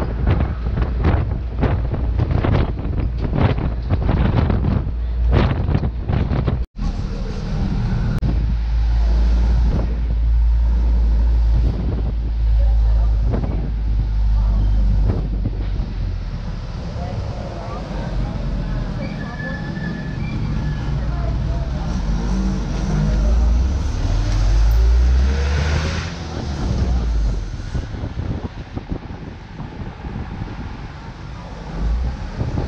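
Road noise heard from inside a moving vehicle: a steady low rumble, with wind buffeting the microphone at the open window in quick gusts during the first few seconds. The sound drops out for an instant about a third of the way in.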